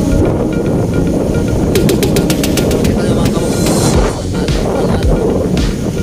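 Wind rumbling on the phone's microphone, with music playing faintly underneath. About two seconds in comes a short rattle of rapid clicks, around ten a second for about a second.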